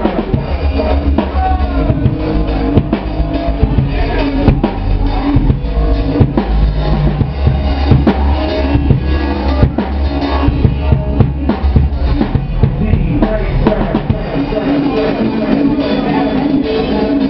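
Live music led by a drum kit: a steady run of drum hits, kick drum and snare, over a loud, deep bass line.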